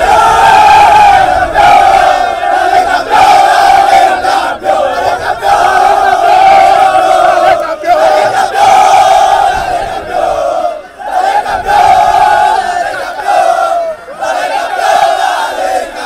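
A team of football players shouting a victory chant together in a huddle. Many voices cry out in unison in loud, repeated phrases about a second or two long, with short breaks between them.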